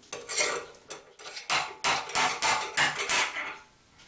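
Irregular metallic clinks and knocks as a pen mandrel carrying the turned blank is handled and taken off the headstock of a stopped mini wood lathe.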